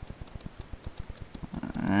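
Rapid, irregular clicking of a computer mouse button, about ten clicks a second, as the paint-bucket fill tool is clicked on spot after spot.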